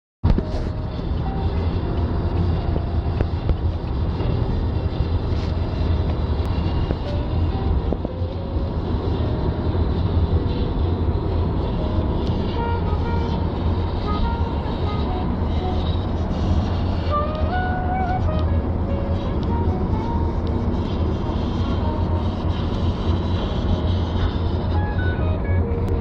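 Steady low road and engine rumble inside the cabin of a moving car.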